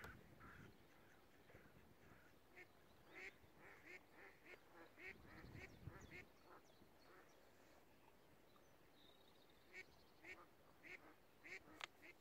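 Near silence with faint, distant waterfowl calling: short calls repeating irregularly, in two bunches, one a few seconds in and one near the end.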